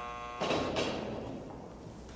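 A prison door buzzer sounds steadily and cuts off about half a second in, followed at once by a burst of noise from a heavy door opening, which fades over about a second.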